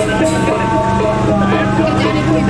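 Balinese gamelan music with held ringing tones that pulse steadily, and people's voices over it.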